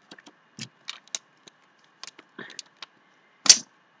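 Plastic blind-bag packaging crinkling and rustling in the hands in short scattered crackles, with one louder crackle near the end.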